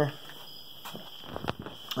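A few faint knocks and taps over low, steady background noise with a faint high steady tone, as a camera is carried in close to an engine on a stand.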